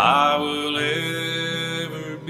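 Hymn singing: a voice enters sharply and holds one long note over acoustic guitar accompaniment.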